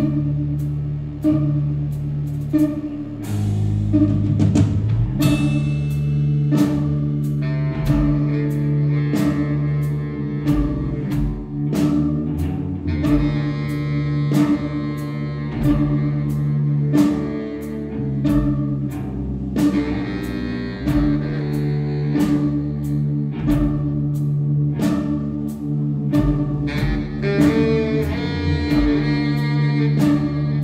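Live band playing an instrumental passage: a drum kit keeps a steady beat of about two strokes a second under held bass notes, with guitar and keyboard parts on top.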